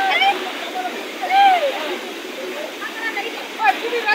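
Steady rushing of a mountain stream, with men's voices calling out briefly over it, one call about a second and a half in and several more near the end.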